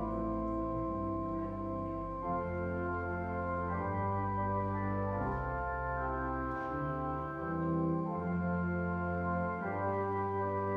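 Church organ playing a slow prelude: sustained chords that shift every second or so over held low pedal notes.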